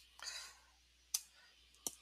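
Quiet pause holding a soft breath-like hiss near the start, then two short, sharp clicks a little under a second apart.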